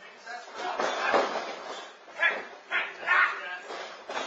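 A wrestler's body hitting the ring canvas with a thud about a second in, among grunts and shouts, then three short loud yells about half a second apart.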